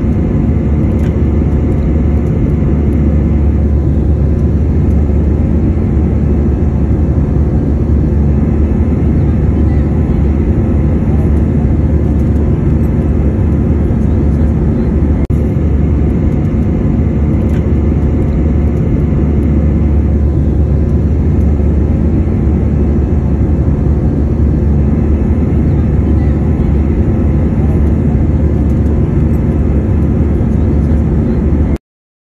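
Jet airliner cabin noise in cruise-like flight beside a wing-mounted turbofan engine: a loud, steady, deep rumble with a constant hum of engine tones on top.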